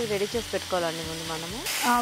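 Potato and tomato pieces sizzling in oil in a frying pan as they are stirred with a wooden spatula; the sizzle gets much louder near the end. A voice speaks drawn-out words over it.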